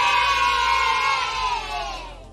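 A group of children cheering a drawn-out "yay" together, loud. The cheer falls in pitch and fades out near the end.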